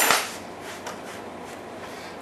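A knock on a plastic cutting board with a brief rub of a paper towel across it right at the start, then only faint rustling.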